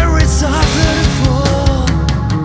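Recorded rock song with distorted guitars and busy drums, a lead melody sliding and bending in pitch over the top.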